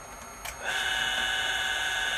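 A click, then a steady high-pitched electric buzz from the water-filtration equipment, starting about half a second in and holding at one even pitch.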